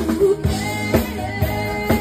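Live band playing rock: a woman singing a held, wavering melody into a microphone over a drum kit beating about twice a second.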